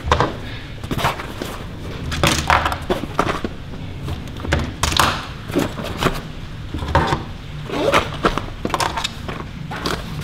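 Fabric tool bag being handled: rustling of the bag and irregular knocks of hand tools as the bag is turned and tools are pushed into its pockets.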